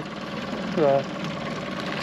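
Boat motor running steadily while trolling, a constant even hum under one short spoken word about a second in.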